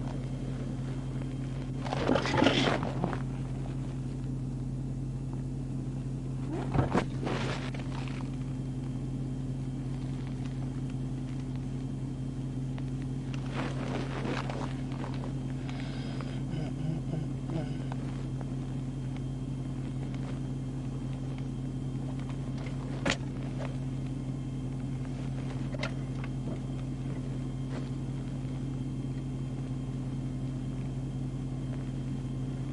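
Steady low hum inside a parked, idling police patrol car, with a few short crackles and a sharp click along the way.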